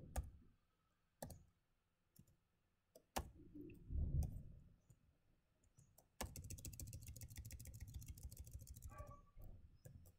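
Computer keyboard typing: a few separate keystrokes, a low muffled thump about four seconds in, then a fast run of key clicks for about three seconds from six seconds in.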